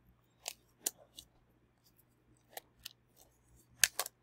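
Short, sharp snips and crinkles of wrapping being undone from a double-wrapped item, about six separate sounds at irregular intervals, the loudest near the end.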